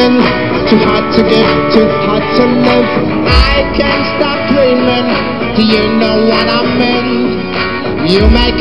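Rock band playing live and loud, guitar to the fore over bass and drums, with a heavy low bass hit about three and a half seconds in.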